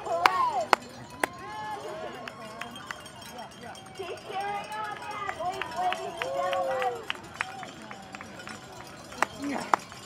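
Spectators' voices talking and calling out over one another at a race finish, none clearly picked out, with scattered sharp handclaps.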